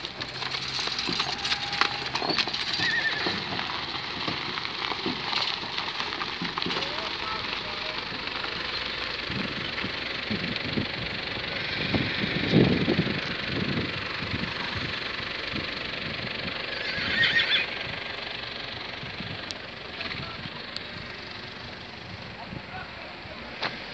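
Horses at close range: a horse whinnies, with hooves on gravel and a background of voices.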